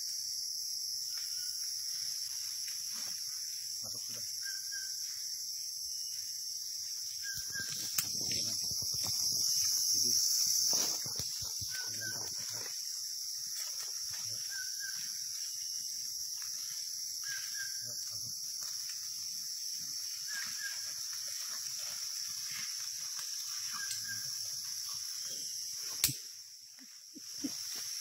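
Rainforest insects (cicadas and crickets) droning steadily at a high pitch, with a short double call repeating every two to three seconds. The drone swells for a few seconds about a third of the way in, and a sharp click near the end is followed by a brief dip.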